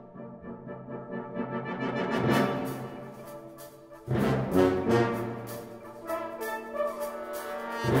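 Brass band of cornets, horns, euphoniums, trombones and tubas playing sustained chords. A first chord swells and fades away, then the full band comes in loudly about four seconds in and keeps playing.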